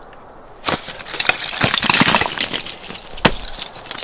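Ice tool striking frozen waterfall ice, which breaks up: about two seconds of dense crunching and clattering as fractured ice falls away, then one more sharp strike near the end. The tool is smashing out a little divot in the ice so that it will hold.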